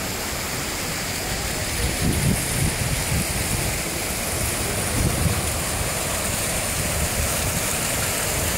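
Ornamental fountain jets splashing: a steady rushing wash of falling water, with a few low rumbling bumps around two to three seconds in and again about five seconds in.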